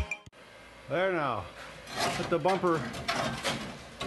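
A man's voice making a few short wordless sounds, with light metallic knocks and clinks as the rusted steel bumper and trailer hitch are handled.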